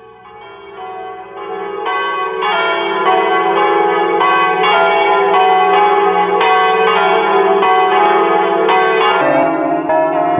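Church bells ringing in the bell tower: repeated strokes about twice a second over a steady hum, building up over the first two seconds.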